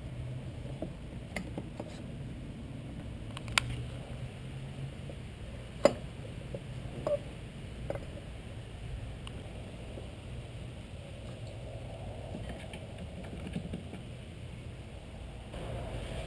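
A few scattered sharp metal clicks and clinks from a wrench and socket as the cylinder-base nuts are torqued down, the loudest about six seconds in, over a faint steady low hum.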